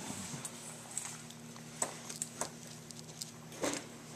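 Quiet room with a steady low hum and a few faint, scattered clicks from a cast-iron tractor carburetor being handled on a steel worktable. A brief vocal sound comes near the end.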